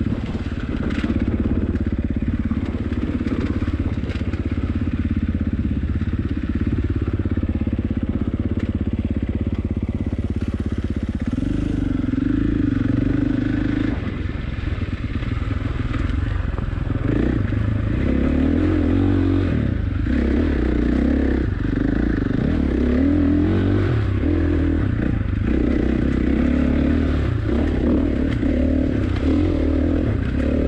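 Dirt bike engine running under way on a rough trail. It holds a steady low pitch at first, steps up in pitch about eleven seconds in, then rises and falls again and again with the throttle.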